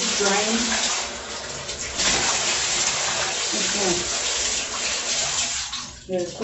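Bathtub faucet running hard into the tub, a steady rushing of water that stops abruptly near the end.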